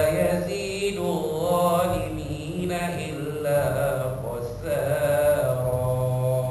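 The Quran chanted aloud by a single reciter in a slow, melodic recitation, in phrases of long held notes with wavering ornaments and short breaks for breath.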